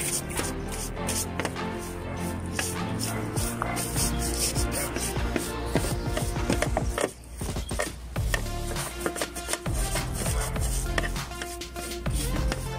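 Stiff-bristled brush scrubbing back and forth along a car door's window rain strip in quick, repeated strokes, cleaning dirt out of the seal channel, with a brief pause about seven seconds in. Background music plays throughout.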